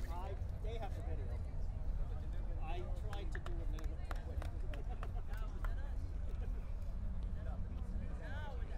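Chatter of many people talking at once, scattered voices and snatches of speech, over a steady low rumble.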